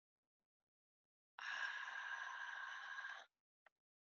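A person breathing out audibly, like a sigh, for about two seconds starting a little over a second in and cutting off abruptly, followed by a faint click.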